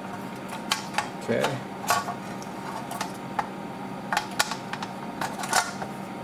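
Sheet-metal top cover of a CB radio being fitted back onto its chassis: a string of irregular sharp metallic clicks and taps, over a steady hum.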